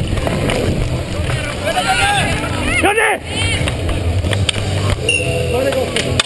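Players' shouts on a street hockey rink, with one loud shout about three seconds in. Underneath is a steady rumble of wind and movement noise on a helmet-mounted camera as the player moves.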